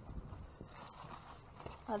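Potatoes and onions knocking together and rustling as gloved hands dig through discarded produce, with a few soft, irregular knocks.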